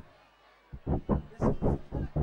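A voice speaking through a microphone on a PA system, starting after a brief lull less than a second in, in short choppy syllables.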